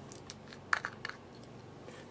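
A few light clicks and scrapes of a small plastic eyeshadow pot being picked up and its screw lid handled.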